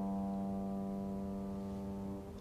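Piano's closing chord of a hymn accompaniment, held after the singer's last note and slowly fading.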